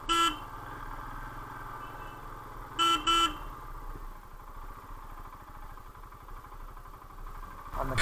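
A horn gives one short toot at the start and two quick toots about three seconds in, over the low, steady running of a motorcycle engine at slow speed on a dirt track.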